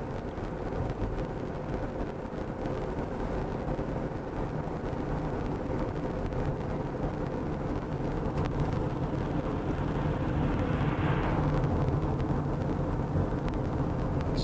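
Car cabin noise while driving: engine and tyres running steadily on a paved road, heard from inside the car, slowly growing a little louder.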